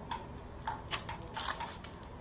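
A few light, scattered clicks and taps from a cheap plastic toy helicopter being handled. No motor is running: the toy is not starting.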